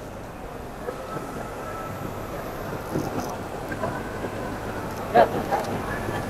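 Busy exhibition-hall ambience: a steady wash of noise with distant crowd chatter and a faint steady machine tone, and a brief nearby voice near the end.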